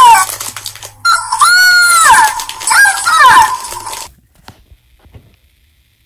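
A very high-pitched voice squealing in several wavering, arching cries with no words. It stops abruptly about four seconds in.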